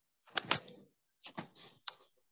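A few short, sharp clicks in two small clusters about a second apart, from computer keys being pressed.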